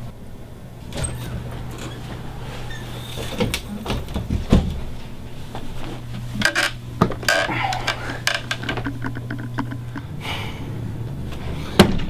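A string of irregular knocks, clanks and short scrapes, as of hard objects being handled and set down, over a steady low hum.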